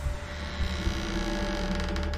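A steady low droning hum from the movie's soundtrack, with a faint held higher tone above it.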